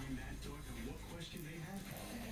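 Television playing in the background: muffled speech from a talk show, with some music underneath.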